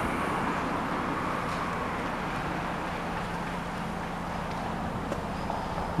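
Steady outdoor background noise of distant road traffic, with a faint steady low hum underneath.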